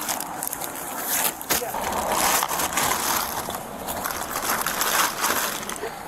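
Bodycam microphone audio of bundled packages and a suitcase being handled: rustling with a few short knocks, over a steady outdoor hiss from roadside traffic and wind.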